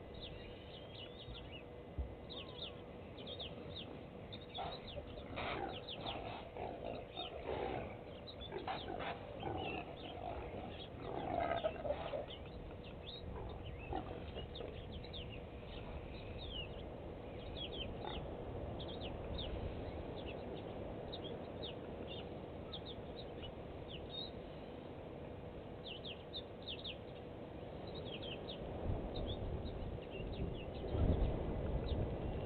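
Bush ambience with many short bird chirps throughout and a busier stretch of louder animal sounds between about five and twelve seconds in, over a low rumble and a faint steady hum.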